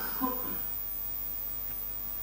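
Steady electrical mains hum with low background hiss in a lecture-hall sound system, with a short faint bit of a man's voice right at the start.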